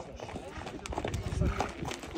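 Hoofbeats of two ridden horses on a dirt-and-stone track: a quick run of clip-clop strikes that grows louder as the horses come closer.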